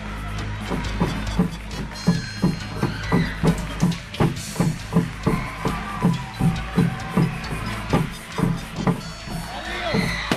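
Hand air pump being worked quickly, about two strokes a second, each stroke a short falling whoosh, as it inflates a blue inflatable swim ring. Background music runs under the pumping.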